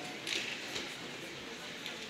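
Ice rink hall ambience: the starter's call echoes away in the large hall, leaving a low steady background with a few faint, scattered clicks.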